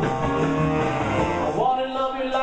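Live band playing rock and roll, with a saxophone among the instruments. Near the end a note slides upward and the low bass drops away.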